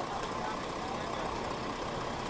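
Steady street background with a low engine hum, like an idling vehicle, and faint voices from the waiting crowd.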